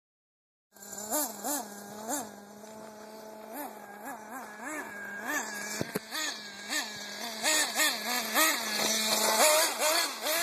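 Carson Specter 2 nitro RC buggy's small two-stroke glow engine running, with quick throttle blips that jump the pitch up and straight back down about every half second. One sharp knock comes a little past the middle, and the revving grows busier near the end.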